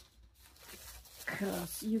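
Faint crinkling and rustling of a thin clear plastic wrapper being handled.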